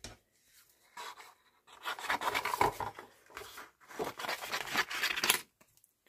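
Scissors cutting through card stock in three rough, crunching passes separated by short pauses.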